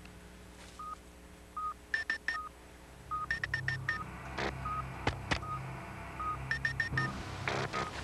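Electronic beeps from a handheld keypad device as its buttons are pressed. Short single beeps recur about once a second, with quick runs of three to five higher beeps. A low steady hum starts about three seconds in, and a few sharp clicks fall in the middle.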